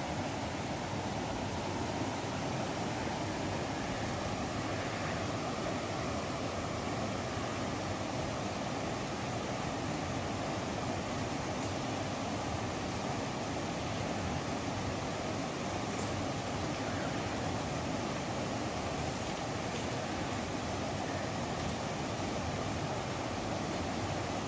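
Steady rushing of a shallow river flowing over rocks, an even unbroken wash of water noise.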